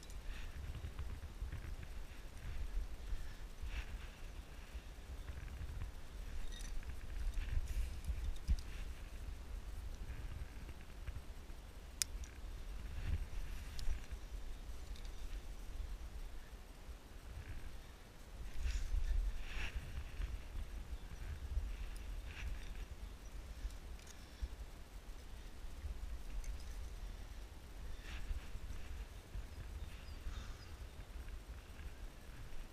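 Wind rumbling on a helmet camera's microphone, with scattered faint scuffs and clicks from a climber moving over limestone and handling quickdraws and rope; one sharp click partway through.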